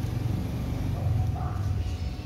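A low steady rumble, a little louder about a second in.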